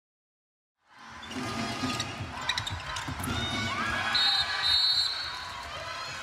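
After about a second of silence, indoor handball game sound: the ball bouncing on the hall floor among players' movements, with crowd noise and voices in the arena.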